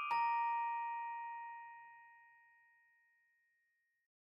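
A single bell-like chime note, struck just after the start, rings out and fades away over about two seconds.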